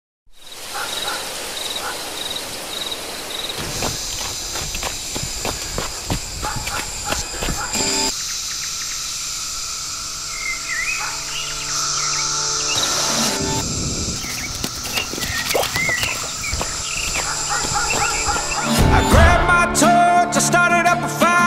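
Insects such as crickets calling in a steady high drone, with short bird chirps now and then and a low steady tone joining about eight seconds in; the song's band comes in with a strong beat about a second before the end.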